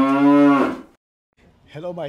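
A cow mooing: one long call that ends just under a second in.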